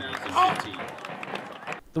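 Parade street noise: a crowd's mingled voices and the footsteps of a uniformed rifle squad marching past, with a brief raised voice about half a second in.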